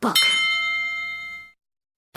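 A single bright, bell-like chime sound effect: one struck ding whose several ringing tones fade out over about a second and a half.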